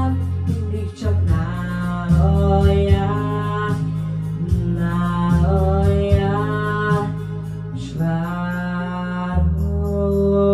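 A boy singing a song into a microphone over a backing track with a bass line.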